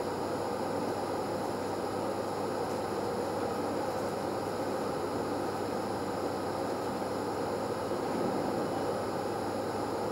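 Steady room noise: an even hum and hiss, with nothing else standing out.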